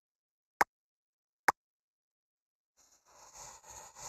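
Two sharp button clicks about a second apart, followed about three seconds in by a soft rustling noise that runs on to the end.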